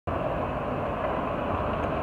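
Steady city street traffic noise, with a bus close by.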